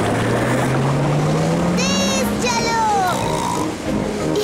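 Cartoon motorboat engine pulling away, its low hum rising steadily in pitch as the boat speeds up. Short high-pitched squeals about two seconds in, then a falling glide.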